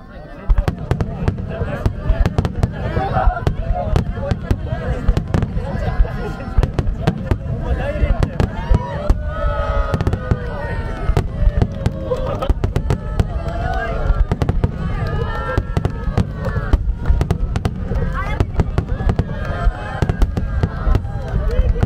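Fireworks display: aerial shells bursting in rapid, dense succession, each a sharp report with deep booming underneath.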